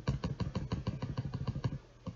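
Computer mouse scroll wheel clicking rapidly through its notches, about ten even clicks a second, stopping shortly before the end.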